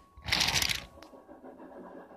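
Die-cast Take Along toy engine rolling along plastic toy track: a loud, short scraping rattle about a third of a second in, then a fainter rumble of the wheels on the plastic.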